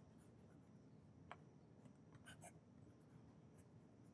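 Very faint scratching of a fountain pen's medium nib on paper as a word is written, with a few light strokes standing out about a second in and again just after two seconds; otherwise near silence.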